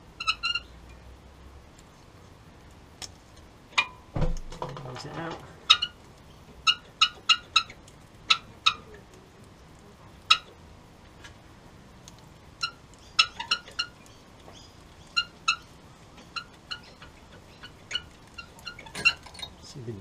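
A knock and about a second of scraping four seconds in as a brake pad is worked out of the caliper. Short, high chirps repeat irregularly throughout.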